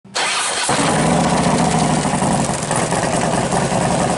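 A vehicle engine starting up. It gives a brief quieter cranking sound, catches under a second in, and then runs loud and steady.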